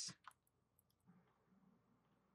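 Near silence, with a few faint clicks of a computer mouse about a second in.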